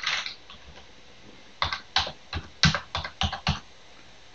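Computer keyboard typing: a quick run of about ten keystrokes starting about a second and a half in.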